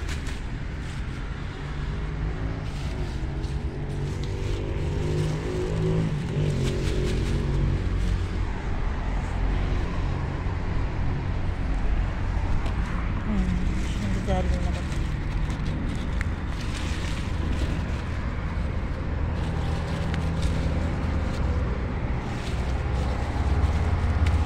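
A steady low outdoor rumble, with scattered clicks and rustling as a hand brushes through lettuce leaves and the handheld camera is moved about.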